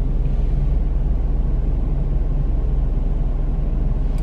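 A car engine running with a steady low rumble, heard from inside the cabin.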